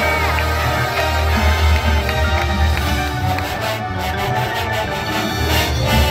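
Marching band playing a fiery Latin-style number: sousaphones carry a heavy bass under trumpets and mellophones, with marimbas and percussion hits from the front ensemble in the second half.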